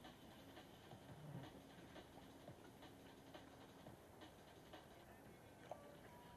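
Near silence, with faint ticking about twice a second from a baitcasting reel as a hooked fish is played, over a faint steady low hum.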